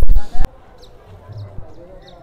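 A brief loud thump from the phone being handled, with the end of a man's voice, cut off suddenly about half a second in. Faint murmur of an outdoor crowd follows.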